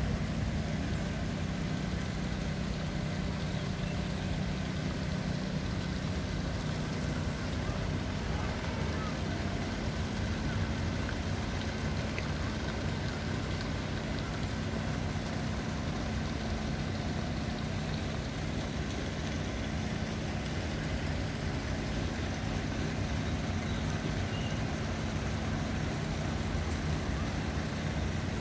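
A steady low mechanical hum from a running motor, holding an even drone without change.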